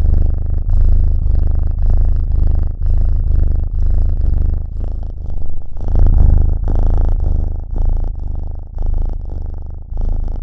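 Domestic cat purring loudly into a close microphone, a low pulsing rumble that swells and breaks about once a second.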